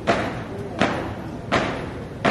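A squad marching in step, their shoes stamping the paved ground together in unison: three sharp stamps, about one every three-quarters of a second.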